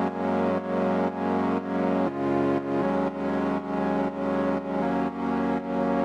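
Synthesizer pad chords playing in an electronic track, swelling and dipping in a steady pulse about twice a second, with the chord changing a few times.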